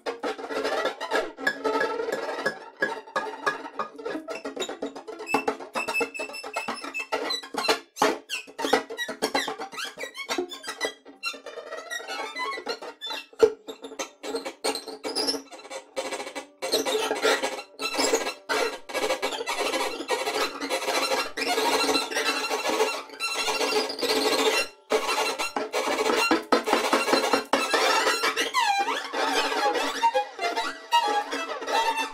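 Experimental instrumental music of string sounds, plucked and scraped, full of sharp clicks, with gliding pitches in places.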